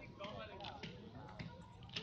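Faint, indistinct voices of people talking in the background, with a few light clicks.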